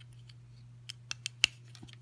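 Small plastic clicks as a three-wire cable's connector is pushed into the 3-pin port of a Dynamixel XL430 servo. There are four sharp clicks in quick succession about a second in, the last the loudest, as the plug pops into place.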